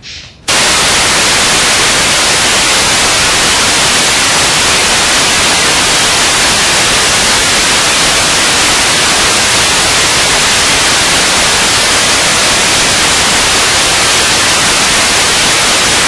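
Loud, steady electronic static hiss, even across the whole range and strongest in the highs. It starts abruptly about half a second in, after a brief dropout, with no other sound above it.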